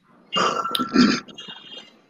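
A short, rough vocal noise from a person on a video call, like a throat sound rather than words, peaking about a second in and fading by the end.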